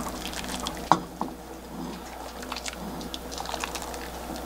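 Milky beef-bone broth poured from a ladle over rice and sliced beef, splashing and dripping, with a light knock about a second in.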